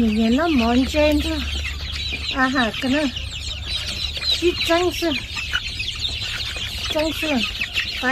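A brood of young chicks peeping continuously, a dense chorus of short high-pitched cheeps, as they crowd round a feeder.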